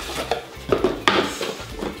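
Small cosmetic products and their cardboard packaging being handled on a table: a few sharp clicks and knocks, the loudest about a second in.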